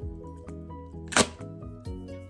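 Background music with steady held notes. About a second in, a short rushing puff as a paper party blower is blown and unrolls.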